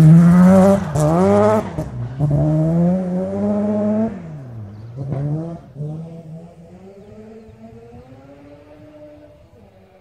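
Rally car engine accelerating hard away on a gravel road, its note climbing and then dropping at each gear change, about three times in the first six seconds, with gravel clattering early on. The engine then fades into the distance, still pulling through the gears.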